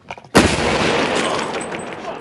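Explosive breaching charge detonating on a plywood door: one sudden loud blast about a third of a second in, followed by a long rush of noise that slowly dies away.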